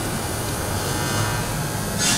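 Steady low hum and hiss of room tone, with no speech.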